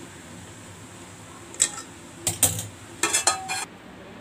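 Metal cookware clinking: a few sharp knocks of a pot and utensils about one and a half seconds in, then a short burst of clattering metal that rings briefly near the end.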